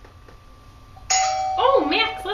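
A doorbell chime rings once, starting suddenly about a second in and ringing on as it fades.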